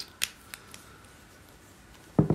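Makeup brush and eyeshadow palette being handled: four light, sharp clicks and taps within the first second.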